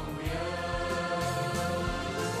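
A choir singing long held notes over instrumental accompaniment.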